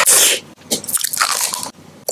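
Close-miked eating sounds of biting and crunching: a loud, sharp burst at the start and a second, longer stretch of crunching about a second later.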